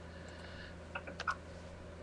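A few computer keyboard keystrokes, short sharp clicks bunched about a second in, over a steady low electrical hum.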